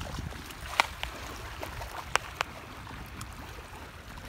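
Low, rumbling wind noise on the microphone over an outdoor lake shore, broken by four short sharp clicks or taps in two pairs, about one and two seconds in.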